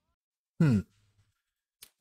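A man's short, thoughtful 'hmm', falling in pitch, about half a second in, then a faint click near the end. Otherwise near silence.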